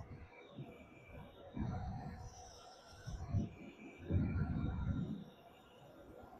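Wind buffeting the phone's microphone in gusts while riding a Tuttio Soleil 01 electric dirt bike at about 43 mph, with a faint steady electric-motor whine underneath. The longest gust comes about four seconds in.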